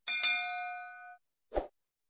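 Notification-bell chime sound effect: one bright ding that rings for about a second and fades. A short pop follows about a second and a half in.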